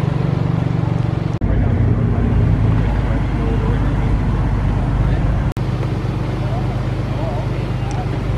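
Car engines idling with a steady low rumble, broken by two abrupt cuts where the sound changes, about a second and a half in and again past five seconds.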